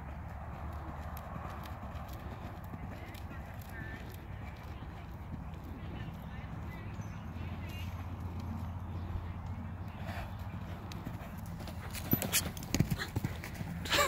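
Hoofbeats of a horse cantering loose on soft arena dirt, a soft repeated thudding, with a cluster of louder sudden sounds near the end.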